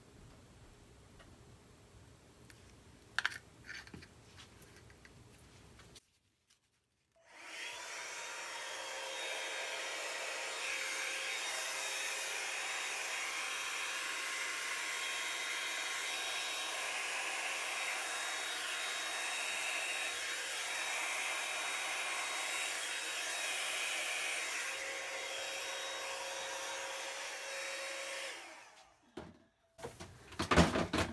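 Hand-held hair dryer switched on about seven seconds in and running steadily for about twenty seconds, a rush of air with a faint steady whine, blowing wet acrylic paint outward across a canvas into a bloom; it cuts off just before the end. Before it, a few faint clicks.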